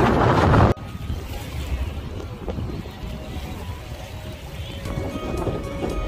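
Wind buffeting the microphone over the sea, loud, cutting off abruptly under a second in. Softer wind and sea noise follows, with background music coming in near the end.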